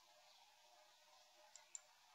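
Near silence with two faint computer mouse clicks in quick succession about a second and a half in.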